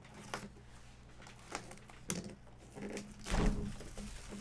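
Plastic shrink-wrap being cut and peeled off a cardboard trading-card box, with scattered small clicks and crinkles and a louder handling thump about three and a half seconds in.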